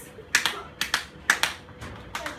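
About five sharp, irregularly spaced clicks.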